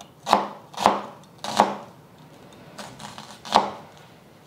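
Chef's knife slicing an onion into slivers on a wooden cutting board: about five separate strokes, each ending in a knock of the blade on the board, with a short pause after the third.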